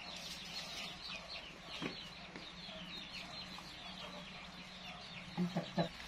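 Chickens peeping and clucking: many short, high, falling chirps throughout. A few quick knocks come near the end.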